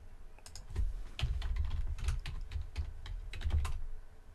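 Typing on a computer keyboard: an irregular run of key clicks that starts about half a second in and stops just before the end.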